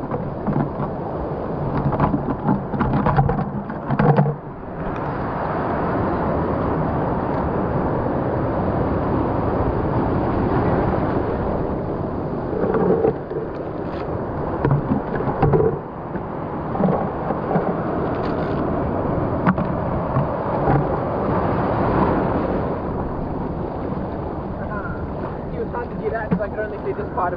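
Sea surf surging and washing around rocks at the water's edge: a loud, steady rushing noise that swells and eases.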